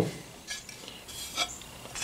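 Faint handling of small metal hardware: a quiet rustle with a couple of light clicks, about half a second and a second and a half in, as spacers and fasteners are set on a motorcycle skid plate.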